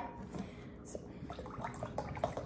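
Faint light clicks and taps of a small metal can of pineapple juice being handled and raised, just after its pull tab was opened.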